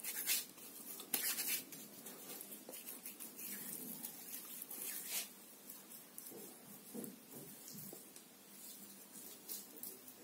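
Faint, irregular soft rubbing of fingers over a soap-lathered face, with brief hissy swishes every second or so.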